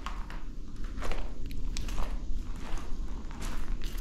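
Footsteps crunching over a floor strewn with rubble and debris, a string of uneven steps.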